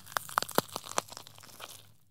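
Crackling click sound effect: a quick run of sharp separate clicks, thinning out and fading away near the end.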